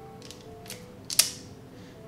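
Handheld wire stripper working on insulated wire: a couple of light clicks, then one sharp snap about a second in as the jaws close and release. Quiet background music underneath.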